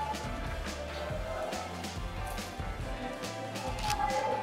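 Background music with a bass line and light percussion.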